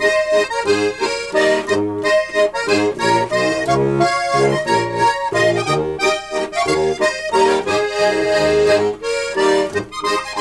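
Two diatonic button accordions playing a Cleveland-style Slovenian waltz as a duet: a legato right-hand melody over a pulsing left-hand bass and chords.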